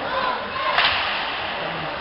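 One sharp crack of an ice hockey shot, stick on puck, about three quarters of a second in, with spectators shouting around it.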